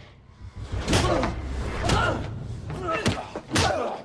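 Hand-to-hand fight: four sharp punch and body-blow impacts about a second apart, each followed by a short grunt of effort or pain.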